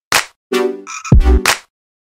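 Kawaii-style electronic dance track in a stop-start break: a short sharp hit, then a chopped pitched stab, then a hit with deep bass, each cut off by a brief silence.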